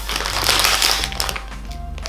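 Plastic marshmallow bag crinkling as it is handled and lifted, loudest in the first second and fading after. Background music plays underneath.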